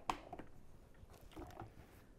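Faint handling of a plastic blender jar being lifted off its motor base: a short knock at the start, then a few soft rustles and bumps. The motor is off.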